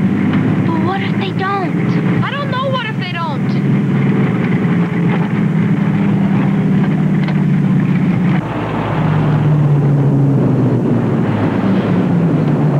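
City bus engine drone heard from inside the passenger cabin, steady, stepping down to a lower pitch about eight seconds in.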